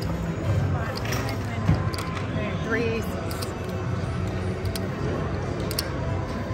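Casino ambience: steady background music and indistinct voices, with a few light clicks at the card table.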